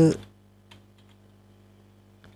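A few faint key clicks of typing on a computer keyboard.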